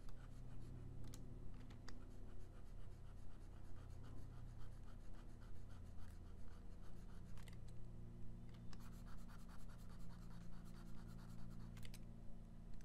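Stylus scratching across a drawing-tablet surface in quick, repeated strokes, sketching circles, with a short pause partway through and a few sharp clicks. A steady low hum runs underneath.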